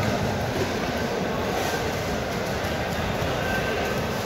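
Steady, even background noise with a low rumble and no distinct events; no single source stands out.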